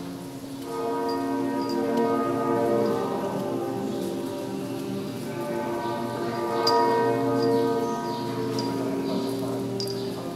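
Church bells ringing, several tones overlapping and ringing on, with a fresh strike every second or few.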